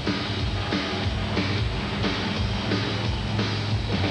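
Rock-style TV theme music with a steady drum beat, playing under the show's title logo.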